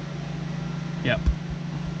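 Electric oil cooler fan running with a steady low hum, switched on through its newly wired switch.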